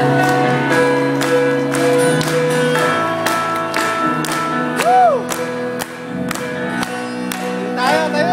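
Live pop band playing on stage, heard from the audience in a large hall: sustained chords over a steady run of drum hits, with a short rising-and-falling vocal or shouted note about five seconds in.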